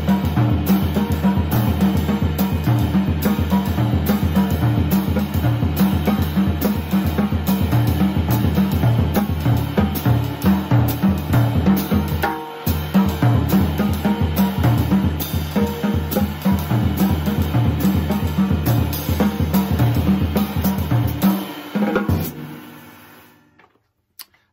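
Jazz drum kit playing a swing exercise: the ride cymbal keeps time while crotchet triplets move between a dry snare (wires off) and the toms, with the bass drum underneath. The playing stops about 21 seconds in and the cymbals ring away.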